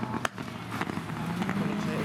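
Autograss racing car engines running on the dirt track, one engine note climbing in pitch in the second half, with a few sharp cracks over it.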